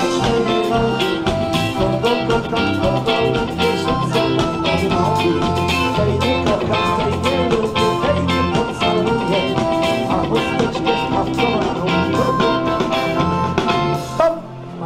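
Live wedding dance band playing an upbeat tune with a fast, steady beat, stopping abruptly at the very end.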